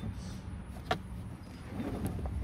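Trunk cargo floor board and rubber mat being lifted by hand, giving a few light plastic clicks and knocks, the sharpest about a second in.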